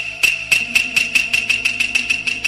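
Rapid run of sharp, ringing ticks, about four to five a second, over a steady background music drone.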